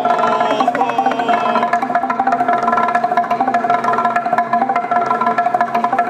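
Txalaparta, the Basque instrument of wooden planks, struck with upright wooden sticks by more than one player in a fast, unbroken rhythm. The strokes ring out a few fixed wooden tones.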